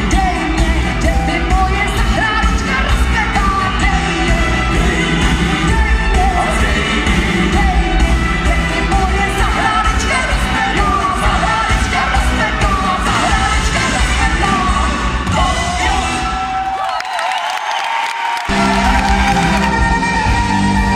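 Czech folk-rock band playing live with singing, echoing in a large hall. Around seventeen seconds in, the bass and drums drop out for about a second and a half while the voices carry on, then the full band comes back in.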